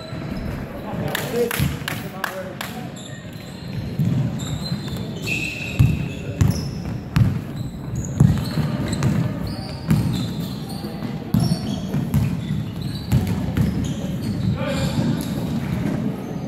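A basketball bouncing repeatedly on a hardwood court as players dribble up the floor, with players' voices calling out over it.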